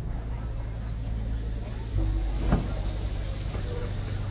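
Low, steady rumble of a rolling freight train, growing louder about halfway through, with a single clank soon after.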